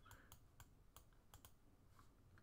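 Near silence with a few faint, sharp computer mouse clicks.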